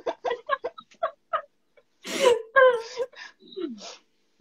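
Women laughing, a quick run of short breathy laughs followed by longer voiced laughter about two seconds in.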